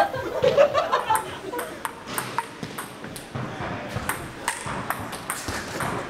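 Table tennis ball clicking off paddles and the table in a rally: sharp, irregular clicks several times a second, starting about a second in. Voices and laughter at the start.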